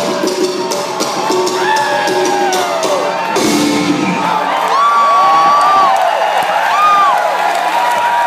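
A live alternative rock band ending a song, the last chord ringing out with a final crash about three seconds in, while the crowd cheers and whoops with rising and falling calls over it.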